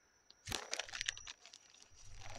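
Plastic soft-bait packages crinkling and crackling as they are handled, a run of sharp crackles and clicks starting about half a second in.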